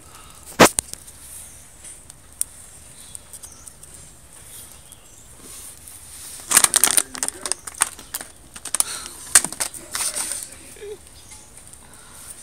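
Sharp clicks and pops over a faint hiss: one loud click about half a second in, then a dense cluster of them a little past the middle and a few scattered ones after.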